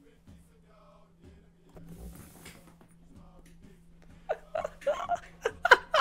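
A man chuckling and laughing in short, uneven bursts, starting about four seconds in after several seconds of near-quiet with only a faint steady hum.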